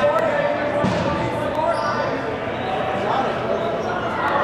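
Dodgeballs bouncing and smacking on a hardwood gym floor, a few sharp impacts, with players' voices calling out throughout.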